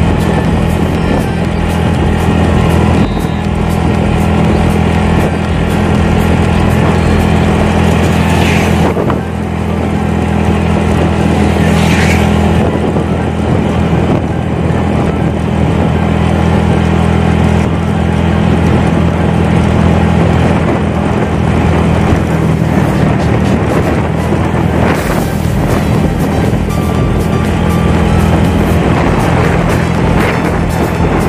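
Motorcycle engine running at a steady cruise, with wind rushing over the microphone.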